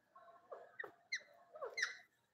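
Indian ringneck parakeet giving about five short, quickly rising squeaks, the loudest pair near the end.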